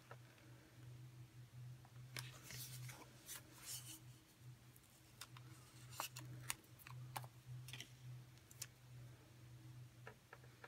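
Faint, scattered crackles and rustles of a vinyl wall decal being peeled off its paper backing and handled, over a low steady hum.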